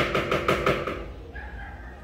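A quick run of sharp knocks, about eight in the first second, from ingredients and containers being handled against a stand mixer's bowl, then quieter handling sounds.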